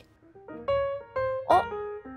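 Background music: a slow run of single held notes, with a brief spoken "Oh" near the end.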